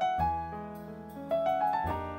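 Live acoustic jazz piano trio playing: grand piano chords over upright bass, with drums. Chords are struck just after the start and again past the middle, followed by a short rising run of piano notes near the end.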